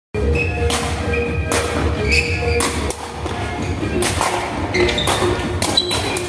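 Sepak takraw ball being kicked back and forth over the net: a series of sharp thuds at uneven intervals, echoing in a large sports hall.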